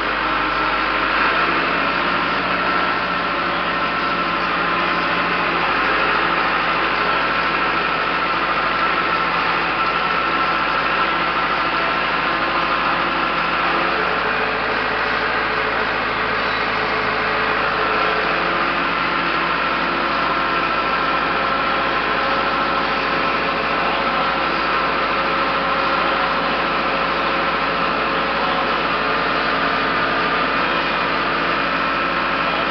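Tractor engine running steadily at a constant speed, heard close up from the driver's seat.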